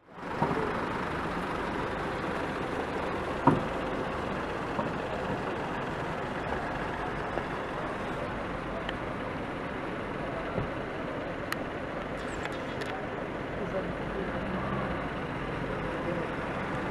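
Steady outdoor vehicle noise from a line of police cars and vans with engines running, with voices faint in the background. A single sharp knock comes about three and a half seconds in.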